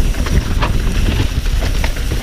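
2018 Santa Cruz Nomad full-suspension mountain bike descending a rocky dirt trail: a steady rumble of wind and tyres on the microphone, with irregular clacks and knocks from the bike going over rocks.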